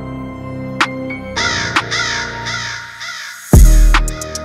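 Dancehall beat instrumental intro: sparse piano notes about once a second, with a harsh call sample repeating over them from about a second and a half in. Just before the end, heavy bass and drums drop in, the loudest part.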